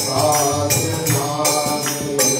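Devotional Hindi kirtan: a man chanting over harmonium chords, with jingling hand percussion keeping a steady beat about twice a second.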